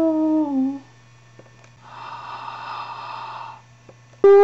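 Horror-film soundtrack: a held, droning note sags in pitch and stops less than a second in. A low hum is left under it, then a breathy, hissing rush swells for about two seconds and fades.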